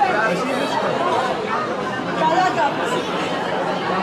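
Crowd chatter: many voices talking over one another at once in a large, busy hall.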